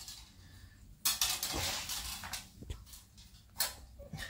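Metal clinks and scraping as a penny farthing's steel frame is handled and fitted inside its large spoked wheel: a burst of scraping and rustling starts about a second in, with a sharp knock near the middle and another clink near the end.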